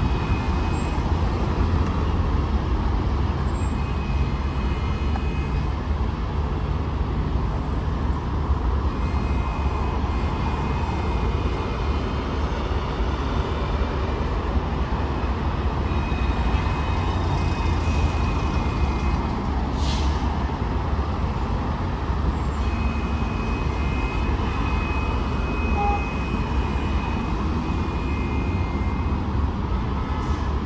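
Steady road-traffic noise at a busy city intersection: a continuous low rumble of passing cars, vans and trucks, with faint high tones coming and going and one brief sharp sound about two-thirds of the way through.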